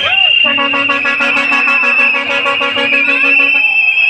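A vehicle horn sounding one steady blast of about three seconds, over crowd voices and a steady high-pitched tone.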